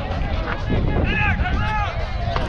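Wind rumbling on a handheld camera's microphone as its holder runs through stadium seats, with a high voice calling out twice about a second in.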